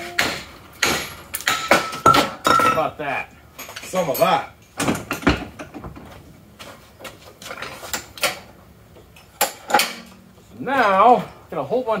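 Hammer blows on a metal transmission adapter clamped in a bench vise: a run of sharp metallic clanks, some ringing briefly, coming quickly at first and then at irregular gaps.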